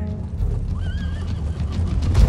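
A horse whinnies briefly about a second in, a short wavering call, over a steady low rumble.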